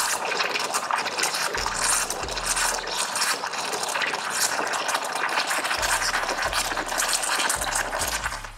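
Espresso machine steam wand frothing milk in a beaker: a steady hiss of steam blown into the milk.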